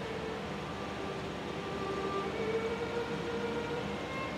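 Soft keyboard music of long held chords, with the chord changing about halfway through and growing slightly louder.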